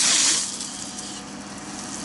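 Fire hose nozzle spraying a water jet with a loud hiss, shut off about half a second in, leaving a faint steady hum.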